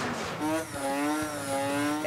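A race car's engine held at high revs, a steady buzzing note that starts about half a second in.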